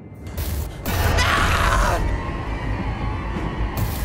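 Horror-trailer sound design: grating mechanical noise that swells about a second in, over a steady deep rumble with music, and a short sharp hit near the end.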